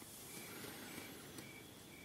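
Faint room tone in a pause of speech, with a short, high chirp repeating about twice a second.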